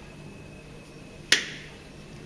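A single sharp click a little past halfway, with a short ringing tail in the room, over low room tone.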